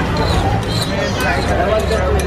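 Metal spatula tapping and scraping on a flat iron dosa griddle as the filling is mashed and spread over the dosa, a run of short knocks. Voices talk over it, with a steady low hum underneath.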